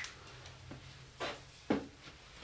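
A shovel being handled in an orange plastic mixing bucket of sand and cement: light scraping, then two short knocks about a second in, half a second apart, the second the louder.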